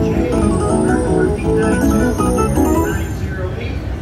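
Dancing Drums slot machine playing its electronic win tune, a quick run of stepped notes as the win meter counts up to 300 credits, thinning out about three seconds in.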